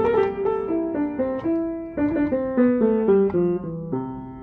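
Upright piano played with both hands: a quick run of single notes, about four or five a second, stepping mostly downward in pitch.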